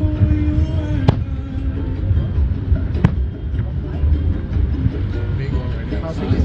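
Two aerial firework shells bursting with sharp bangs, about a second in and about three seconds in, over accompanying show music with a held note and a steady low rumble.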